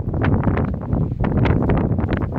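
Wind buffeting the microphone in gusts over the low road rumble of a moving car.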